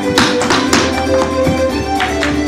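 Irish dance hard shoes striking the floor in several sharp, irregular taps, over recorded traditional Irish music with fiddle and guitar.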